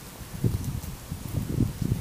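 Soft, irregular low thuds of a miniature pony's hooves and people's footsteps on dirt as the pony walks, starting about half a second in.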